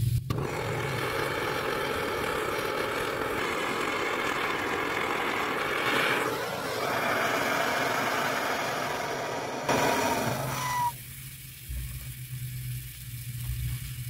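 MAPP gas torch burning with a steady rush of flame as it melts silver powder in a clay crucible. It starts just after the opening and cuts off about eleven seconds in.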